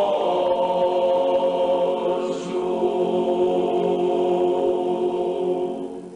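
Sardinian male choir of tenors, baritones and basses singing unaccompanied, holding one long sustained chord. The chord dies away at the very end, closing the piece.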